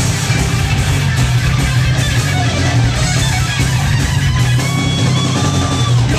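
Heavy metal band playing live and loud: distorted electric guitars over bass and a drum kit, with a long held high note over the last second or so.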